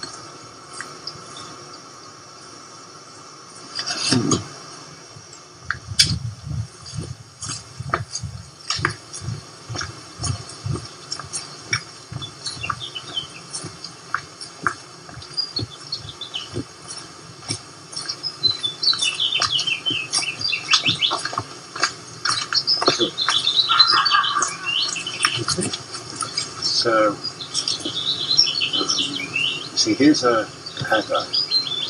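Footsteps walking, a regular run of low thuds about twice a second, after a single thump about four seconds in; from just past halfway, small birds chirp and twitter over the steps.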